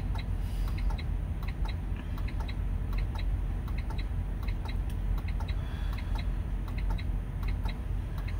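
Steady, evenly spaced clicking, a few clicks a second, in the cab of a broken-down semi truck: the clicking goes with the truck's fault. A low steady rumble runs under it.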